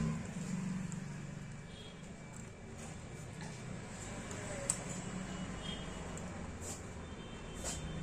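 Faint clicks and handling noise from a flat cable and its plastic connector being fitted inside an opened DLP projector, over a low steady rumble, with a sharper click about halfway through.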